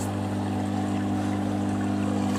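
Steady low hum with even overtones, typical of a nearby power transformer, over a steady wash of running water.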